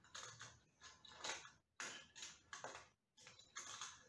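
Faint, irregular clicks and rustles of a string, small metal hook and pulley being handled and hooked onto a small bucket load.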